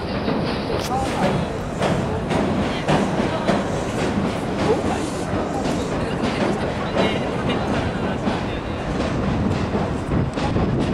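Train crossing a steel truss railway bridge, its wheels clattering and rumbling steadily with many irregular clicks through the whole span.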